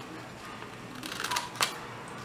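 Metal scissors snipping through a paper pattern and fabric: two short, sharp snips in the second half.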